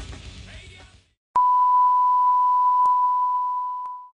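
Rock soundtrack fading out, then after a moment's silence a loud, steady electronic beep: one pure unbroken tone like a test tone, tapering off slightly at the very end, with a couple of faint clicks.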